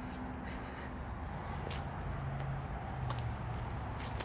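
A steady, high-pitched insect chorus trilling without a break, with a faint low hum beneath it.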